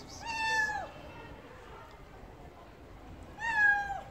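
A cat meowing twice: two drawn-out meows that drop in pitch at the end, the first just after the start and the second, louder one near the end.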